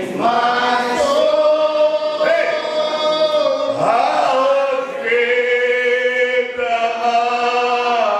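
A crowd of people singing a hymn together, unaccompanied, in long held notes phrase after phrase.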